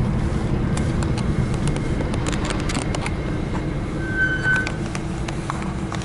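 Steady low rumble of a car's engine and road noise, heard from inside the cabin, with scattered light clicks and one short high beep about four seconds in.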